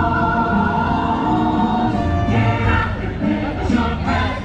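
Castle stage-show music: a choir singing held chords over orchestral backing with a steady bass line.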